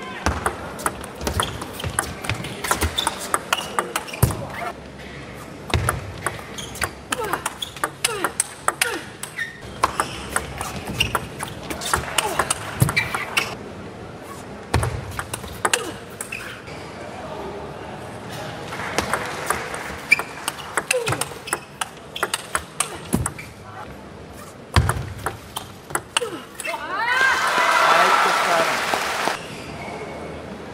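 Table tennis play: a string of quick, sharp clicks as the ball strikes the paddles and the table, with crowd voices in the background. Near the end comes a loud burst of crowd voices.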